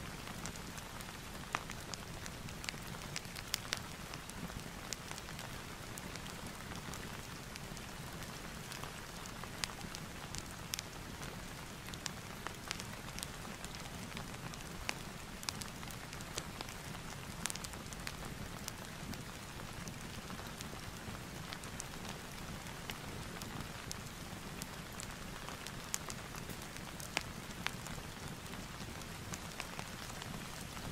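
Steady rain ambience with scattered sharp crackles from a fireplace.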